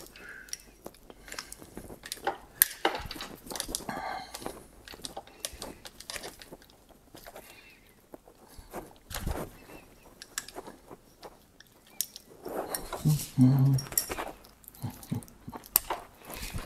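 Small metal clicks and rattles of a bicycle chain being worked in a hand chain tool as a link is cut out of it, with a few sharper knocks.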